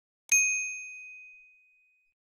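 A single notification-bell "ding" sound effect: a bright bell-like tone struck once, about a third of a second in, and ringing away over about a second and a half.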